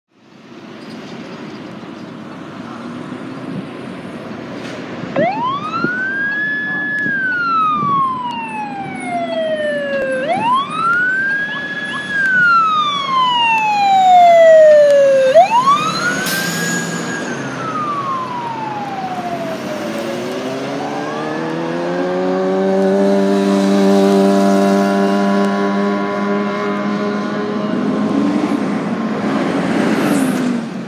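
Fire engine siren winding up and slowly falling away three times: each wail rises quickly to a high pitch, holds briefly, then glides down over a few seconds. After that, a heavy vehicle engine accelerating, its drone rising and then holding steady.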